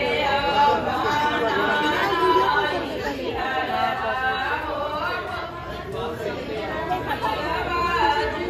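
Many people talking at once: the overlapping chatter of a crowd of seated and standing guests, with no one voice standing out.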